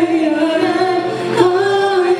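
A woman singing a Riffian izran melody, holding long notes and stepping up in pitch about one and a half seconds in.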